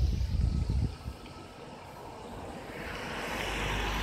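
Wind buffeting the microphone for about the first second, then a car approaching and passing close by, its road noise swelling toward the end.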